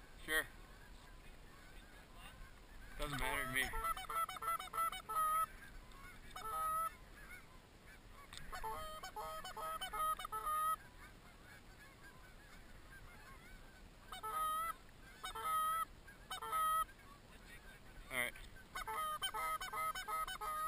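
Canada goose honks in quick runs of short, evenly pitched honks, several bursts with pauses between them.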